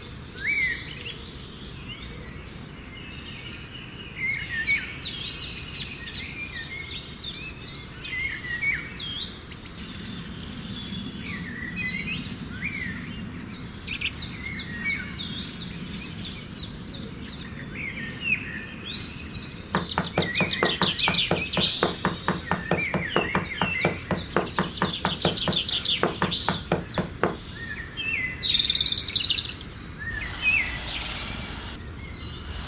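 Songbirds chirping and calling, many short rising and falling calls overlapping. About two-thirds of the way in, a fast, even run of clicks lasts for several seconds.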